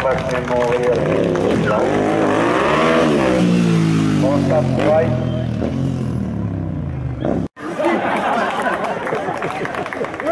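Motorcycle engine revving up and down as the bike is ridden in stunts, with the chatter of a crowd of spectators underneath. The sound breaks off abruptly about seven and a half seconds in and picks up again at once.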